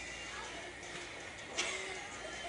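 Steady background hum of a large store with faint voices, broken by one sharp knock about one and a half seconds in.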